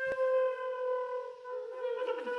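E-flat clarinet holding one long, steady note, with a sharp click just after it begins and a brief wavering in the tone near the end.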